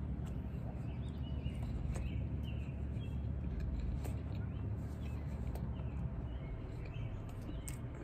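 Outdoor ambience: a steady low rumble with faint, scattered bird chirps.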